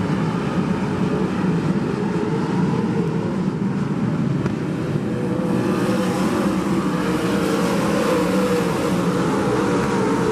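A field of winged sprint cars' engines running together as the pack circles a dirt oval, loud and steady. Several engine pitches waver up and down through the second half as the cars work through the corner.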